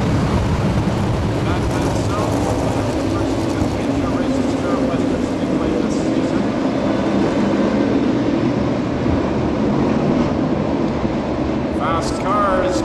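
A field of winged sprint cars' V8 engines running together at low speed as they roll around a dirt oval before a start, a steady, loud engine drone.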